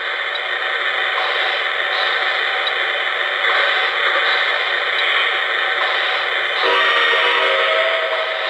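O-gauge model steam locomotive's onboard sound system, playing a steady hiss from its small speaker while the engine stands still. About seven seconds in, a whistle tone joins the hiss.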